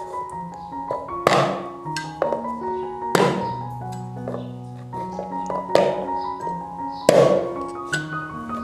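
A kitchen cleaver knocking sharply on a wooden chopping board as it scores a cross into raw chestnuts, several strikes a second or two apart, the loudest near the end, over background music with a mallet-like melody.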